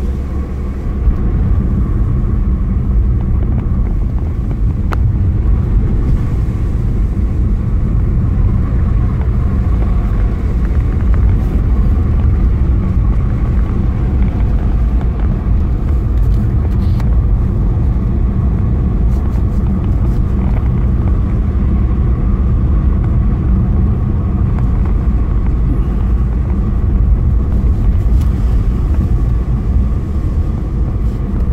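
Car driving along a road, heard from inside the cabin: a steady low rumble of engine and road noise.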